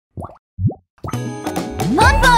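Two short cartoon 'plop' sound effects, the second a quick upward 'bloop', then a bright children's music intro starts about a second in.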